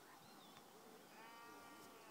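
Near silence, with one faint, distant pitched animal call a little over a second in, lasting under a second.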